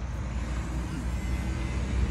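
Steady low outdoor rumble, with faint distant voices underneath.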